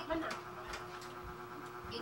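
A steady, even-pitched buzzing hum, with a few faint soft thumps underneath.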